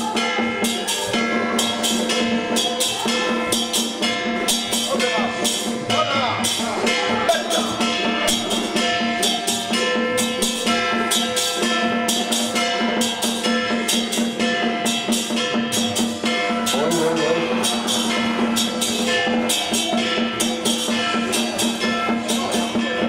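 Taoist ritual music: a quick, steady beat of drum and metal percussion over a sustained pitched tone, with a voice chanting briefly about five seconds in and again near seventeen seconds.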